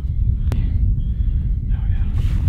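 Wind buffeting the microphone as a steady low rumble, with one sharp click about half a second in.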